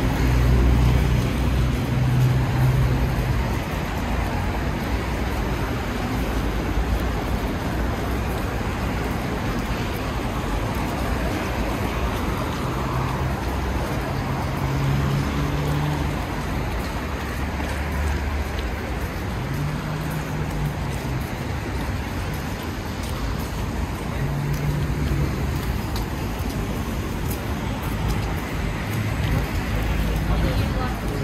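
City street traffic: steady road noise from passing cars and buses, with a low engine hum that swells several times as vehicles go by.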